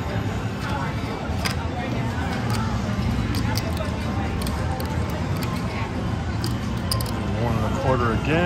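Casino floor ambience: a steady hum with background chatter, and a few sharp clicks of cards and chips being handled on the table.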